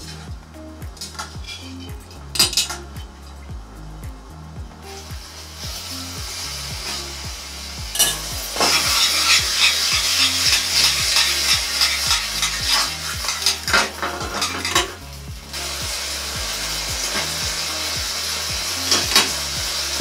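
Metal tongs clinking against a pot and pan as spaghetti is lifted from boiling water. About eight seconds in, the pasta is tossed in a hot pan of tomato sauce and sizzles loudly, with repeated clicks of the tongs on the pan. Near the end the sizzle drops to a quieter steady hiss.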